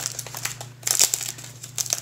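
Clear plastic wrap around a rolled diamond painting canvas crinkling as it is handled, an irregular run of short crackles that grows denser in the second half.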